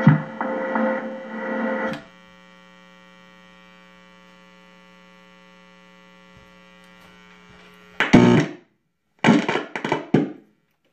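An electronic tech-house beat from a Korg Volca Beats and Volca Sample plays through a mixer for about two seconds, then stops. A steady electrical mains hum from the rig is left underneath. Near the end come two short, loud bursts of sound.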